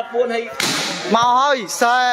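A sharp, sudden burst of noise about half a second in, followed by two loud shouted calls, each rising and then falling in pitch, during a volleyball rally.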